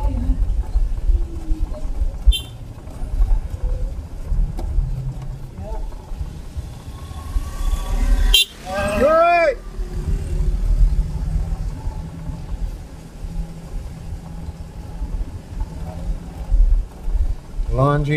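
Low, steady engine and road rumble of a car driving, heard from inside the car. About eight and a half seconds in, a brief pitched sound rises and falls.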